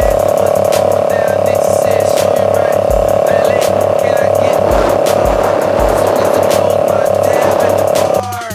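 Hip hop backing track with a steady beat and deep kick thumps over one held droning tone.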